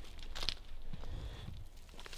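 Light rustling and crackling of dry twigs and forest litter being stepped on and brushed through, with a louder rustle about half a second in.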